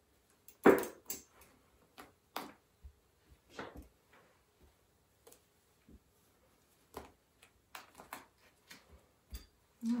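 Scattered short handling sounds, small clicks, knocks and rustles, as a folded cotton baby onesie is bound with a band around wooden sticks beside steel hemostat clamps. The loudest comes just under a second in.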